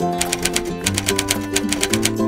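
Background music with sustained guitar-like notes, overlaid with a rapid typewriter clicking sound effect of about eight keystrokes a second.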